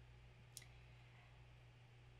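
Near silence: room tone with a steady low hum, and one faint click about half a second in.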